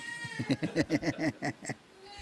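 A man laughing: a quick run of about eight ha's that stops shortly before the end.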